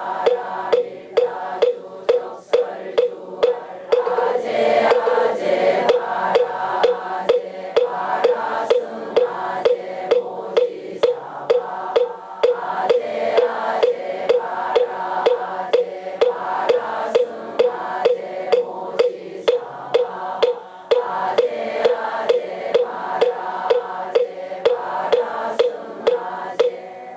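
A congregation chants a Korean Buddhist liturgy in unison, kept in time by a moktak (wooden fish) struck steadily, about three knocks a second.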